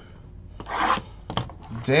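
Shrink wrap being torn off a cardboard box of trading cards: a short rasping rip about half a second in, then a couple of light clicks, and a man starts talking near the end.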